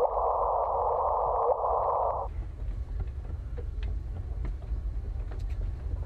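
Electronic audio collage: a steady mid-pitched hiss cuts off suddenly about two seconds in, leaving a low rumble with scattered faint crackles and clicks.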